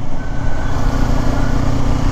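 2018 Kawasaki Ninja 250's parallel-twin engine running steadily while the bike is ridden, with wind and road noise over it.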